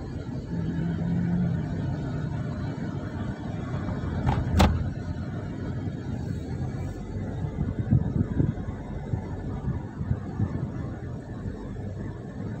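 Road noise inside a moving Toyota car's cabin: a steady low rumble of tyres and engine at cruising speed, with one sharp knock about four and a half seconds in.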